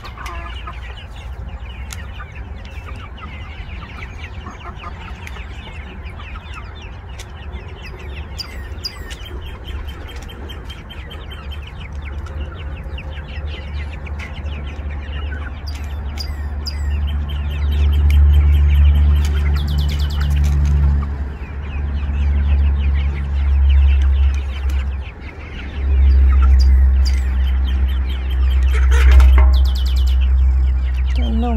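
Flock of young chickens clucking and calling while pecking at corn, with many quick pecking taps. A low rumble comes in about halfway through and grows loud near the end.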